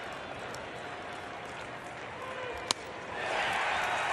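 Steady crowd murmur in a ballpark, broken almost three seconds in by a single sharp crack of a bat hitting a pitched baseball, with the crowd noise swelling right after as the ball is lofted for a fly ball.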